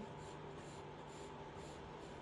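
Graphite pencil drawing short lines on paper: a faint, soft scratching in a few repeated strokes.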